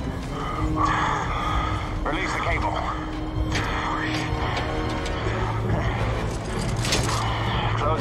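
Action-film sound mix: music score over a steady low aircraft drone, with shouted voices and a few sharp cracks.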